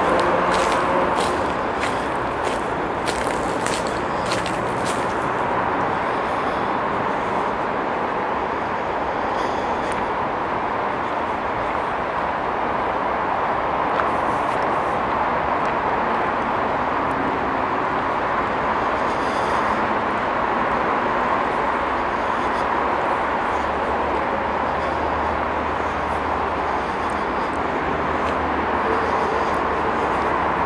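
Steady rush of road traffic at a distance. In the first few seconds, footsteps crunch on dry leaf litter.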